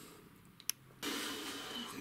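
Near-silent room tone with one sharp click, then a steady recording hiss that starts abruptly about a second in. The sudden change in the background marks a splice between two recordings.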